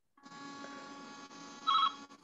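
A steady faint hum from an open call line, with a short burst of electronic ringing tone near the end.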